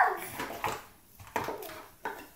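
A toddler's short squeal falling in pitch at the start, followed by a couple of light knocks of cardboard nesting blocks being handled.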